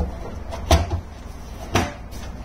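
Two dull knocks about a second apart, from hands handling the battery and inverter equipment, over a low steady background hum.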